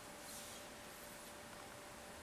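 Quiet room tone with a faint steady hum, and a brief soft rustle about a quarter second in.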